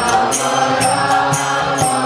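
Kirtan: mantra chanting sung by a woman over the sustained reeds of a harmonium. A regular metallic percussion beat of about two to three strikes a second keeps time.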